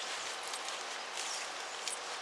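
Steady outdoor background noise: an even hiss with no distinct event standing out.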